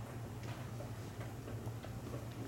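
Chalk on a blackboard: short, irregular taps and scratches as lines and a symbol are drawn, over a steady low hum.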